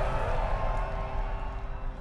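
Concert crowd cheering, a steady wash of noise with a low rumble, over a faint held musical note; it slowly fades.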